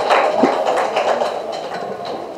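Audience clapping, a dense patter of many hands that fades away over two seconds.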